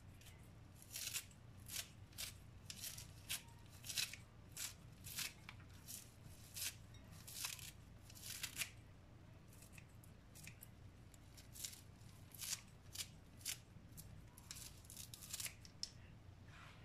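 Scissors snipping through fresh parsley in a steady run of short, crisp cuts, about one every two-thirds of a second. The cuts pause for a few seconds after the ninth second, then resume.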